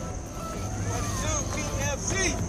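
Sea-Doo jet ski engine idling with a steady low hum, with voices over it.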